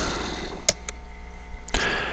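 A pause in speech over a steady low hum, with one sharp click about two-thirds of a second in and a fainter click just after. A short breath-like hiss comes near the end.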